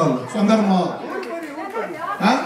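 Speech: people talking, with no other sound standing out.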